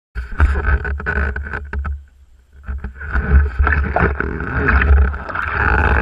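Kayak paddle strokes: the blade splashes and drips as it dips and pulls through the water, with many small splashes and knocks over a pulsing low rumble. A brief lull comes about two seconds in.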